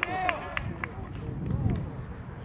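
Men's voices shouting out on an open football pitch, a short burst of calls at the start, over a steady low rumble of wind on the microphone.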